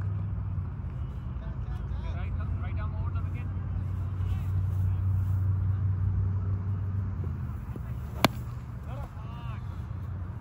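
Outdoor playing-field ambience: a steady low rumble, faint distant voices now and then, and a single sharp crack about eight seconds in.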